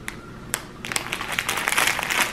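Clear plastic packaging crinkling as it is handled: a single click about half a second in, then dense crinkling from about a second in.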